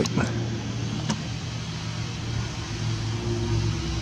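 A steady low mechanical hum with an even hiss behind it, unchanged throughout.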